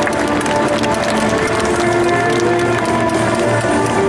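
Stadium public-address music playing over crowd noise, with scattered clapping.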